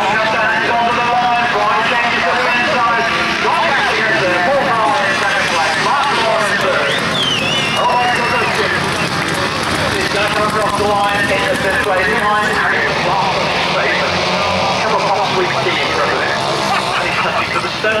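Several single-cylinder grasstrack racing motorcycles at race speed, their engines revving up and down as they race round the track, with voices mixed in.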